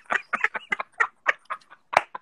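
People laughing hard in short, clucking bursts, about three or four a second, tapering off. Near the end comes a single sharp smack, like hands clapping together.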